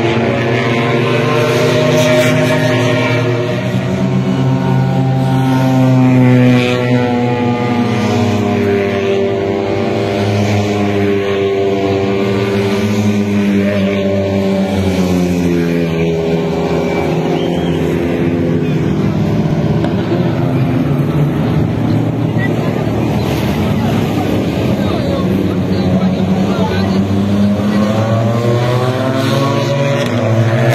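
Motor vehicle engines running, a continuous drone whose pitch slowly rises and falls as the vehicles pass along the road.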